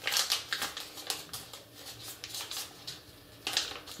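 A soft plastic packet of makeup-remover wipes crinkling and rustling as it is worked open and a wipe is tugged out. A run of crackles eases off in the middle, then a short louder burst comes near the end.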